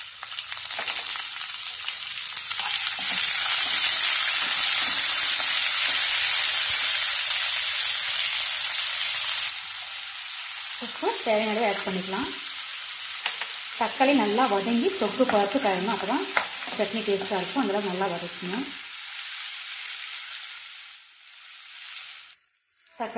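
Chopped tomatoes sizzling in hot oil in a non-stick kadai, frying with dals, red chillies and curry leaves. The sizzle is loudest in the first half and dies down near the end.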